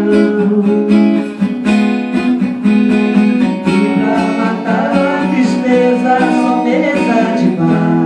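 Acoustic guitar strummed in steady chords, with a woman's voice singing through a microphone over it in the middle of the passage.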